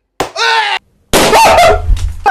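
A latex balloon bursts with a sharp pop as a lighter flame touches it, followed at once by a short yelp. After a brief gap, a loud voice starts about a second in.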